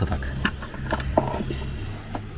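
A few light, scattered clicks of plastic wiring-harness connectors and wires being handled inside an engine-bay electronics box, over a steady low hum.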